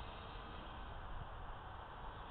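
Faint steady hiss with a faint, distant, even hum from the flying RC airplane's motor.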